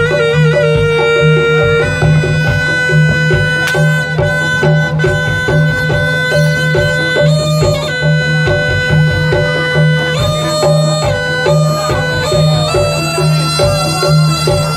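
Bantengan ensemble music: a shrill double-reed slompret plays long held, ornamented notes that shift pitch every few seconds, over steady rhythmic drumming.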